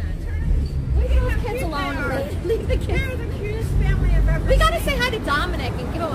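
Indistinct talking by several people, over a steady low rumble.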